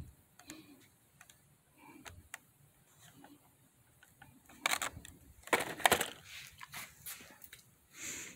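Handling noise from a carded action figure's plastic blister packaging: scattered small clicks and rustles, with a few louder crinkling scrapes about halfway through.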